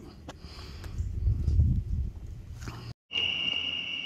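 Wood fire burning in a double-walled steel pan stove fire pit: a low rumble with a few sharp crackles. After a sudden cut about three seconds in, crickets trill steadily.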